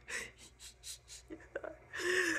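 A man's quick, breathy gasps, about four a second, with a few short voiced sounds in the second half.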